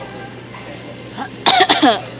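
A person coughs in a short, loud burst of a few quick hacks near the end, over low background noise.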